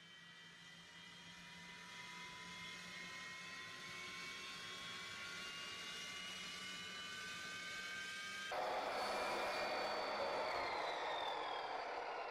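Tacklife sliding compound miter saw running, its motor whine rising slowly in pitch; about eight and a half seconds in the blade bites into the pallet wood with a louder, rougher cutting noise, and the whine drops in pitch under the load near the end.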